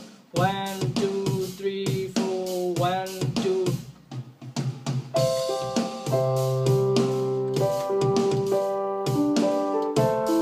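Programmed drum beat with a melody line that slides in pitch, played on software instruments from a MIDI keyboard; after a short drop about four seconds in, sustained electric-piano chords come in over the drums.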